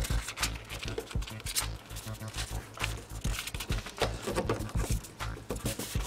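Paper wrapper crinkling and rustling in many short, irregular crackles as it is folded and pressed by hand around a trading-card pack.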